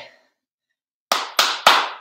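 Three quick hand claps, about a third of a second apart, each louder than the last, ringing briefly in a small room.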